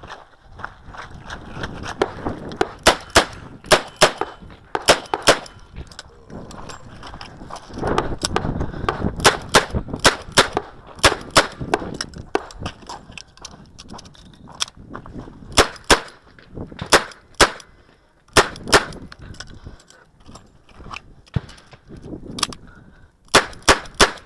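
Smith & Wesson Model 625-JM revolver in .45 ACP firing about two dozen shots, mostly in quick pairs a third of a second or so apart, in strings broken by pauses of a few seconds. Wind buffets the microphone throughout, strongest a third of the way in.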